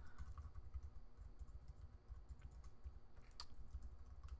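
Faint typing on a computer keyboard: irregular keystrokes as code is entered.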